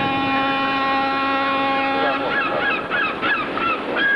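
Gulls calling over water, several short calls in quick succession from about halfway through, over a steady, held tone with many overtones.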